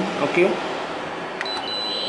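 A key on a Canon imageRunner 2002N copier's control panel clicks once about halfway through, followed by a thin, high-pitched steady electronic tone from the machine over a constant hiss.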